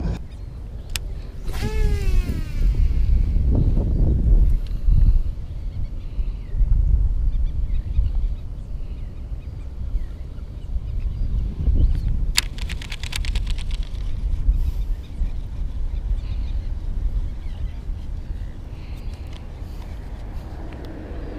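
Steady low outdoor rumble, with a short falling whine about two seconds in and a quick run of clicks about twelve seconds in.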